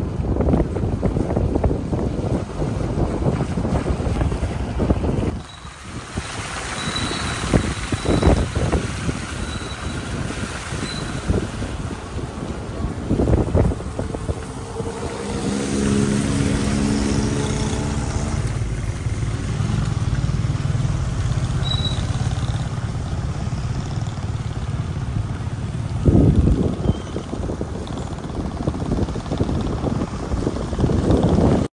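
Wind buffeting the microphone and road noise from a vehicle moving along a wet road. An engine note comes through for several seconds around the middle.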